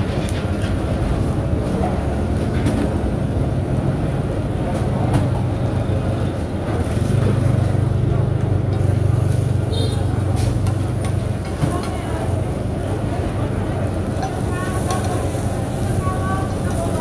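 Oyster omelettes sizzling on a large iron frying pan at a street stall, over a steady low hum like an idling vehicle engine that is strongest in the middle, with people talking in the background.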